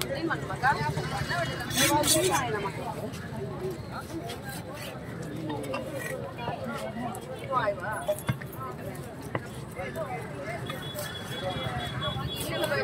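Voices of people talking, not clearly worded, over a low steady rumble, with a few sharp knocks about two seconds in and again around eight seconds.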